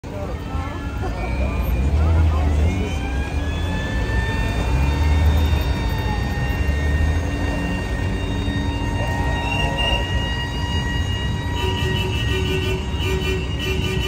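Vintage cars rolling slowly past in a parade, engines running with a low rumble that swells as each car goes by, over crowd voices. Near the end a horn starts sounding in short repeated blasts.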